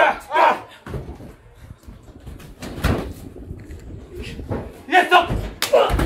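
Wrestlers' bodies slamming onto the ring mat, heard as two heavy thuds about halfway through and near the end, after a dive from the top rope.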